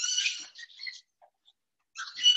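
A small animal's high-pitched squeal, held at an even pitch for about half a second at the start, then quiet.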